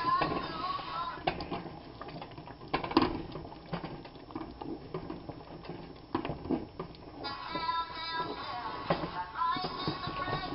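A plastic spoon stirring and knocking against a pot of thick, simmering tomato sauce, with a few sharp taps. From about seven seconds in, singing or music plays in the background.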